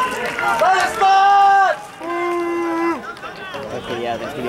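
Men shouting long, drawn-out calls across a rugby field: two loud held shouts, about a second in and about two seconds in, with other voices calling and overlapping around them.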